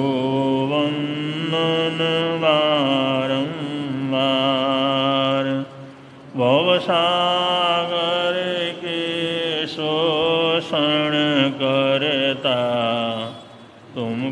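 A man's solo voice singing a Jain devotional hymn in long, drawn-out notes that glide slowly between pitches. There is one breath pause about six seconds in, and the last note fades just before the end.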